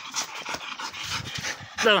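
A pit bull panting in quick, irregular breaths.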